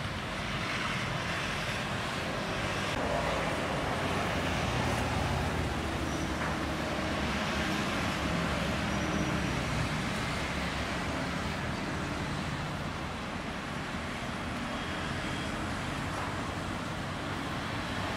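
Steady road traffic: cars and motorcycles passing on a busy street, a continuous rush that swells and eases gently.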